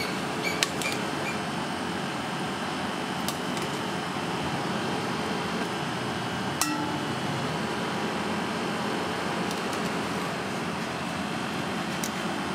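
Steady ventilation noise in a kitchen, with a few light metal clinks against stainless-steel cookware. The clearest clink, with a short ring, comes about halfway through.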